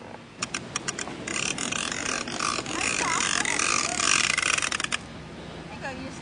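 Hard plastic wheels of a child's ride-on toy rolling over asphalt: a few separate clicks, then a loud continuous rattling grind for about four seconds that stops suddenly near the end.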